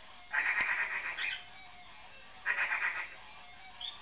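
Pet parrot chattering: two buzzy, rapidly pulsing calls of about a second each, the second near the middle, then a short rising chirp near the end. Faint electric guitar played through effects pedals runs underneath.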